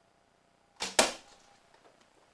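A 48-pound Black Widow PLX longbow shooting: a sharp snap of the string at release about four-fifths of a second in, then about a fifth of a second later the louder smack of the arrow striking the hanging backstop, with a short ringing tail. The arrow misses the target face.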